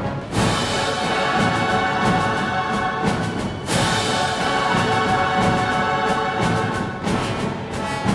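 Large orchestra of young and adult players with brass to the fore, playing loud orchestral music. Two strong accented hits cut through, one just after the start and one a little over three and a half seconds in.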